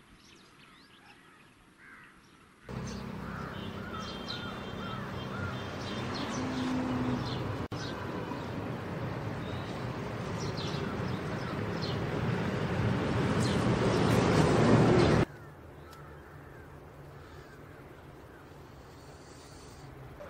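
Outdoor ambience of birds calling over a steady noise. The noise comes in a few seconds in and grows louder, then cuts off sharply about fifteen seconds in, leaving a quieter low hum.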